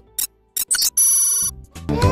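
Cartoon soundtrack effects: a few short electronic clicks, then a bright ringtone-like chime for about half a second. A beat-driven music track starts up near the end.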